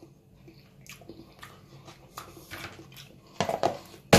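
Plastic food tubs handled on a wooden cutting board: faint scattered ticks and taps, then a louder clatter of knocks near the end as a reused margarine tub is picked up and moved.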